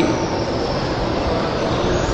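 Steady background hiss and rumble with no voice, an even rushing noise at a fairly high level.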